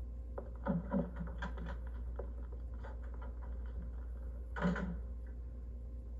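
Footsteps and scattered light knocks in a small room, with one louder knock a little before the end, over a steady low hum.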